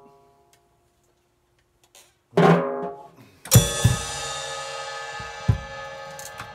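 Drum kit played in sparse strokes: after a pause, a single drum hit a little over two seconds in, then a cymbal crash struck together with a low drum thump about three and a half seconds in, the cymbal ringing on under two more low thumps, the last near the end.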